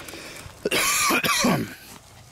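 A man coughing: one harsh fit of coughs, about a second long, starting a little after the first half-second.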